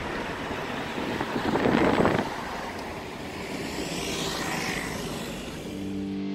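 Street traffic noise, with a vehicle passing louder about a second and a half in.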